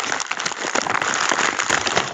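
Loud, steady rustling and crackling close to the microphone, thick with small clicks.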